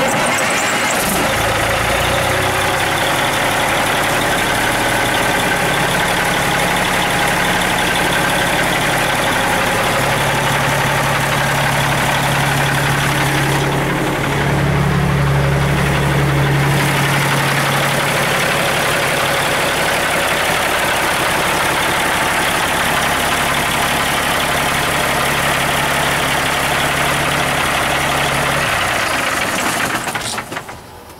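Freshly rebuilt Cummins ISX inline-six diesel truck engine starting and then running steadily at idle. Its low engine note grows louder for a few seconds around the middle.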